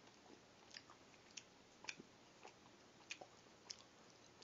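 Near silence with faint, irregular soft clicks of a person chewing a mouthful of breakfast burrito.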